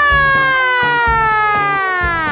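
A long, drawn-out high vocal note, held for about two seconds while sliding slowly down in pitch and dropping away at the end, over background music with a steady beat.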